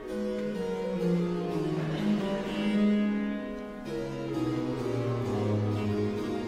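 Baroque string ensemble with harpsichord continuo playing an instrumental passage, the cellos carrying a bass line that steps down and climbs back.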